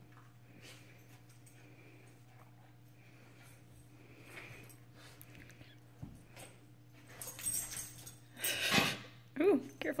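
Two small dogs play-fighting: faint for most of the time, then louder bursts of dog play noise and scuffling in the last three seconds.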